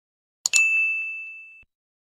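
A quick double click, then a single bell-like ding that rings for about a second and fades away: the click-and-chime sound effect of an animated subscribe button with a notification bell.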